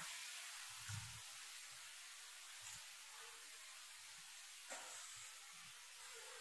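Near silence: a faint steady hiss of room tone, with a soft low thump about a second in and another near the end.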